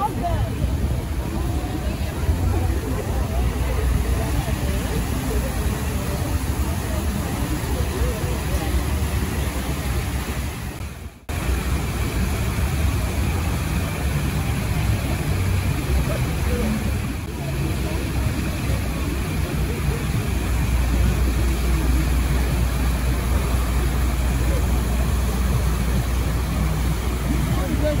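Busy city plaza ambience: a steady wash of fountain water falling over the basin edges, with the voices of people nearby and passing traffic. There is a brief dropout about eleven seconds in, and a heavier low rumble in the last third.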